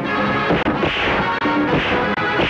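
Dramatic film background score with a loud crash repeating about every three-quarters of a second over sustained tones.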